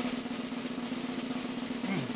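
Snare drum roll, a suspense sound effect, starting abruptly and running steadily with no change in level.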